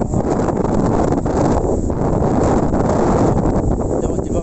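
Strong storm wind buffeting the microphone: a loud, steady rumbling roar.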